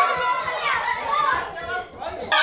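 Young children's voices calling out and chattering, easing into a brief lull near the end.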